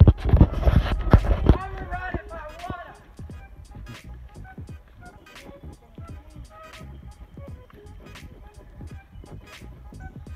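Handling noise on a phone's microphone: loud rubbing and thumps for about the first second and a half as the phone is passed from hand to hand and picked up to film. A brief voice-like sound follows, then a quiet background with faint scattered ticks.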